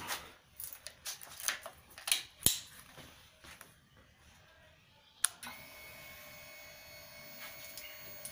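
Scattered sharp clicks from hands working the motorcycle's handlebar switchgear and ignition key. About five seconds in a louder click is followed by a faint, steady electrical whine. The engine is not running.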